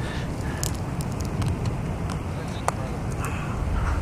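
Steady low rumble of wind and the distant roar of a violent tornado, with a few faint clicks and faint voices in the background.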